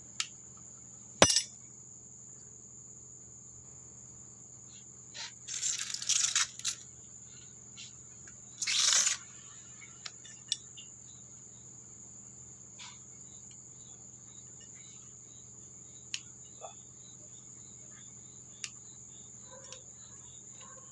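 Crickets trilling steadily at a high pitch, with sharp snips of bonsai cutters on small branches, the loudest about a second in and a few more scattered later. Two longer rustles around six and nine seconds.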